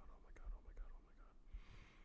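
Faint whispered muttering by a man close to a microphone, with a soft breathy hiss near the end.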